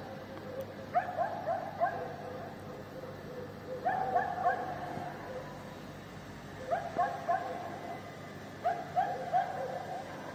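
A dog barking in short runs of three or four barks, four runs about every two to three seconds.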